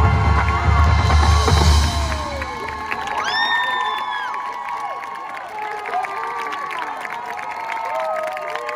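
A marching band holds a loud chord that dies away about two and a half seconds in, giving way to a crowd cheering and whooping, with one loud high whoop just after.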